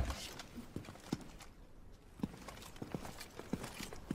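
Horses' hooves clopping slowly and unevenly at a walk, a handful of faint separate knocks.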